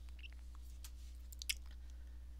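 Faint steady low electrical hum with a few soft clicks, the loudest about one and a half seconds in.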